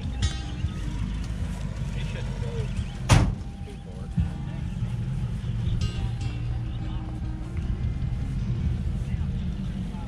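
Outdoor crowd ambience: background music and distant voices over a steady low rumble, with a single sharp knock about three seconds in.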